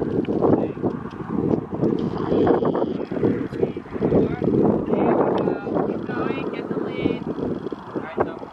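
Wind buffeting the camera microphone, a low rumble that rises and falls in gusts.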